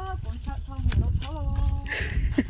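A person speaking in short phrases, with a few sharp knocks or steps in between and a steady low rumble underneath.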